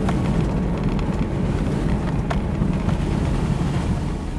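Vehicle driving on a snow-packed unpaved road, heard from inside the cabin: a steady low engine and tyre rumble, with a couple of faint ticks.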